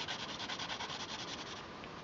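Coloured pencil shading on highly textured paper: quick back-and-forth strokes scratching rhythmically, about nine a second, dying away about a second and a half in.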